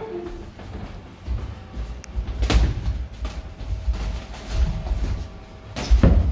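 Boxers sparring in a ring: dull thuds of footwork on the canvas and gloved punches, with two sharp smacks, one about two and a half seconds in and a louder one near the end.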